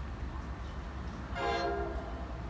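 An approaching NJ Transit train sounds one short horn blast of about half a second, several tones sounding together, about a second and a half in, over a low steady rumble.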